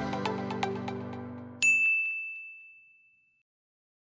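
Background music fading out, then a single bright ding about one and a half seconds in that rings for over a second before dying away.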